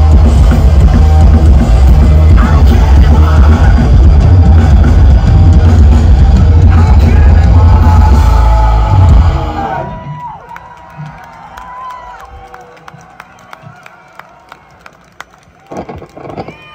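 Live punk rock band with distorted electric guitars, bass and drums playing loud through the PA. The song ends abruptly about nine and a half seconds in, and the crowd cheers.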